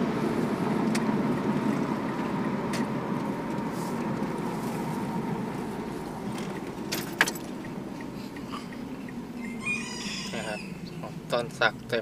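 A motor vehicle's low, steady rumble, slowly fading away over the first several seconds. About ten seconds in, a rooster crows briefly.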